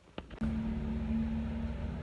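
Car cabin noise while driving: a steady low engine and road rumble with a faint humming tone, starting about half a second in after a moment of quiet.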